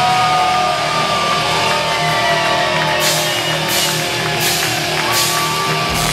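Heavy metal band playing live: distorted electric guitars, bass and drums, with a sustained, bending lead guitar line. About halfway through, a steady crashing beat comes in, about one crash every three-quarters of a second.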